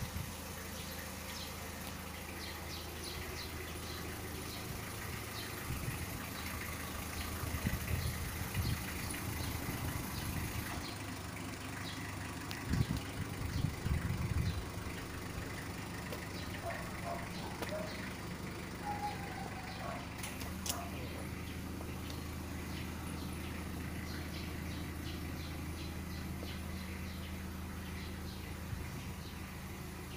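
Motorstar 110cc underbone motorcycle's small single-cylinder four-stroke engine idling steadily, growing louder briefly twice, around eight and thirteen seconds in.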